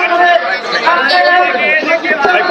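A man speaking loudly into a handheld microphone, with crowd chatter beneath.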